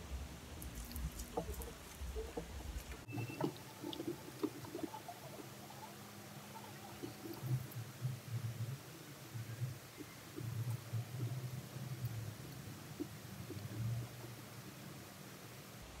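Faint, irregular rubbing and scratching of fingers massaging a gritty coffee-grounds and coconut-oil scrub into facial skin, with soft low bumps. A low rumble in the first few seconds cuts off suddenly.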